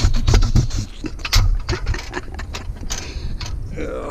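Metal bed frame rails knocking and scraping against each other as they are gripped, lifted and loaded onto a trailer: a rapid, irregular run of clanks, loudest near the start and again at about one and a half seconds.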